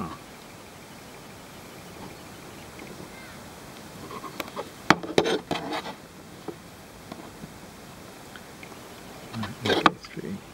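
Handling noise from working an eight-strand polyester rope splice with a Swedish fid: the rope rustles and creaks as a strand is forced through the tight braid. There is a sharp click about five seconds in, followed by a short burst of rustling, and more rustling near the end.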